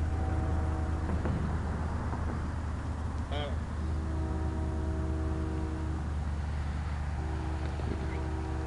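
Steady low rumble of road traffic, with faint humming tones that fade in and out.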